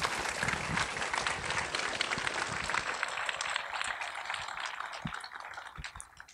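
Audience applauding, the clapping slowly fading and dying away near the end.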